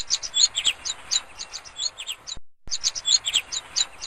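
Small birds chirping in rapid, quick high notes. The sound cuts out abruptly for a moment about two and a half seconds in, then starts again.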